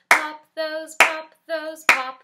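Hand claps, one on each sung "pop" of a children's counting song: three claps a little under a second apart, with a woman singing between them.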